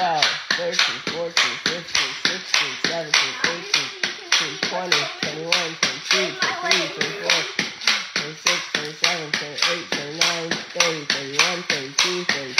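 Pogo stick bouncing on a floor: a sharp thud with each landing, about three a second, in an even rhythm.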